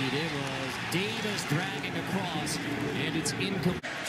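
Men's voices talking over a steady background of stadium noise, broken off abruptly near the end by an edit.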